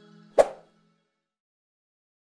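The last held notes of the outro music dying away, with one short, sharp pop about half a second in: a mouse-click sound effect on an animated subscribe button.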